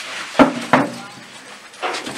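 Two sharp knocks about a third of a second apart, like a hard object being set down or bumped.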